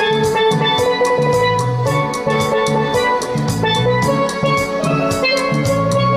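Steel pan playing the melody of a pop ballad over a steady drum beat and a repeating bass line.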